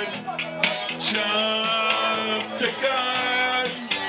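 Electronic keyboard playing a preset backing: sustained synth chords that change every second or so over a steady drum-machine beat of about two strokes a second.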